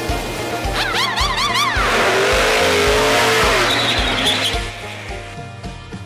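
Show-intro music with a steady beat, overlaid with race-car sound effects. About a second in comes a warbling tyre squeal, then a loud swell of car engine and rushing noise that fades away after about four seconds.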